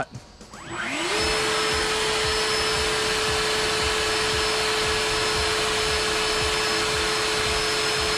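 Battery-powered EGO POWER+ backpack leaf blower spinning up about a second in. Its brushless-motor fan rises in pitch to a steady whine over a loud rush of air, then holds at speed.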